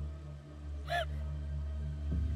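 A woman's single short, choked gasp about a second in, over a low, steady music drone.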